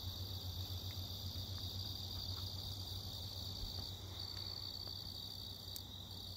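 A steady chorus of night insects chirping in a constant high-pitched drone, with a low steady hum underneath.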